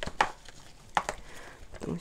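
A plastic flower pot knocking against its plastic saucer as it is set onto it: two sharp knocks about a second apart, with a few fainter taps.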